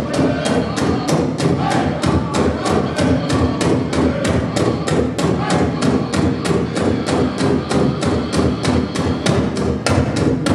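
Powwow drum group playing a contest song: a big shared drum struck in a fast, steady beat by several drummers together, with the group singing over it.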